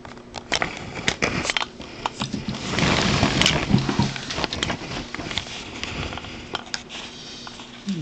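Les Logan Speed-X semi-automatic telegraph key ('bug') clicking irregularly as its lever and contacts are worked by hand, with a louder rustle of handling a few seconds in.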